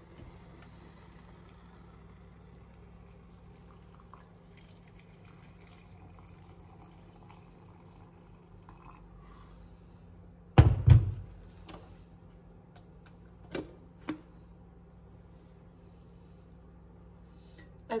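Boiling water poured from an electric kettle into a glass French press, a faint steady pour for about nine seconds. Then a loud thunk about ten and a half seconds in, followed by a few light metallic clinks as the plunger lid is fitted on the press.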